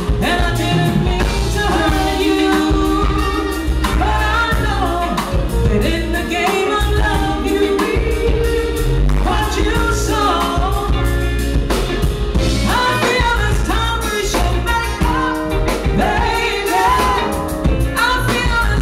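A female soul singer singing live into a hand microphone over a band with bass and drums, her voice bending and sliding through long melodic phrases.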